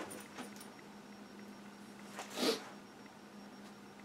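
Quiet room tone with a faint steady hum, broken about two and a half seconds in by one short, breathy sound such as a man's sniff or quick breath through the nose.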